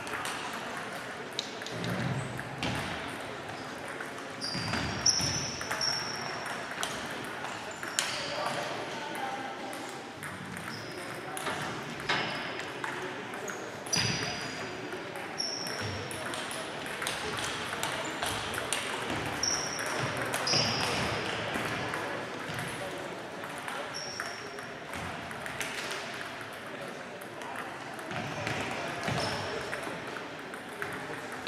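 Table tennis balls clicking off bats and tables at several tables at once, an irregular stream of sharp clicks, with frequent short high-pitched squeaks and a background of voices.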